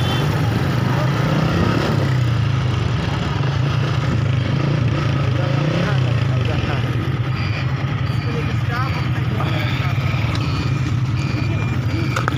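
A vehicle engine running steadily as a continuous low hum, mixed with the voices of a crowd.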